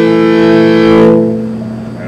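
Morin khuur (Mongolian horse-head fiddle) being bowed: one long note with a rich, buzzy overtone stack, held for about a second and then dying away.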